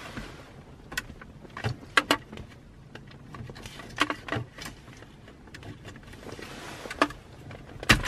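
Several scattered sharp plastic clicks and small rattles as a wiring-harness connector's locking clip is lifted and the plug is worked off the back of a BMW E39 CD player. The loudest clicks come about two seconds in and near seven seconds.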